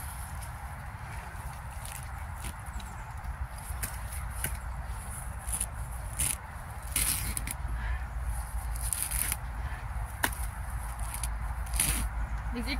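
Grass being pulled up by hand, a scattered series of short rips and snaps that come thicker in the second half, over a steady low rumble.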